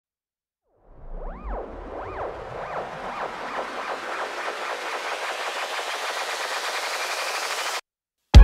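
Electronic riser: a swelling whoosh of noise with repeated arching tones that come faster and faster as it builds. It cuts off suddenly near the end.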